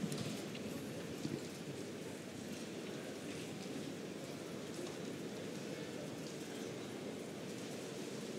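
Steady, even murmur of an arena crowd, with a couple of small sharp sounds in the first second or so.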